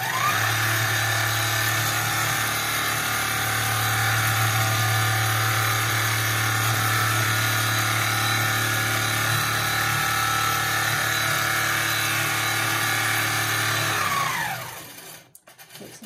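Handi Quilter Fusion longarm quilting machine starting up and stitching steadily along a straight horizontal row, with a rising pitch as it spins up and a falling pitch as it winds down near the end.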